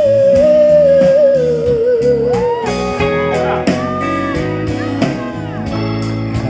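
Live rock band playing an instrumental passage: a long held lead melody wavers and slowly falls in pitch over the first few seconds, over drums, bass and keyboards.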